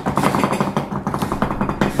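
A fast drumroll: rapid, even strikes in a continuous run with no break.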